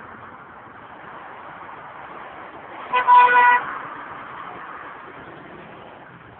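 Car horn sounding about three seconds in: a quick tap, then a half-second honk, over steady street traffic noise.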